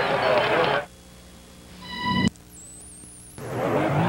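Television broadcast sound of voices that cuts out abruptly under a second in. In the near-quiet gap a short, steady, high-pitched beep rises in level and stops suddenly, and the broadcast voices return near the end.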